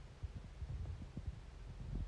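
Quiet room tone inside a car cabin: a faint low rumble with a few soft, low thumps.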